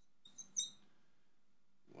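Marker squeaking on a glass lightboard while writing a circled number: a few short, high squeaks about half a second in.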